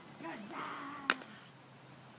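A faint, distant voice for about a second, ended by a single sharp click; then the sound drops to a low background.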